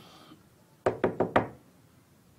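Four quick, sharp knocks on a door in a row, about a second in.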